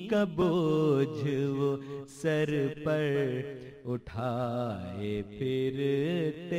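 A man's voice chanting a slow melodic recitation, unaccompanied, in long held phrases with a wavering pitch and short breaks between them.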